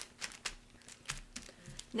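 Press-seal zipper of a plastic zip-top bag being pinched shut by fingers, giving a quiet string of small irregular clicks.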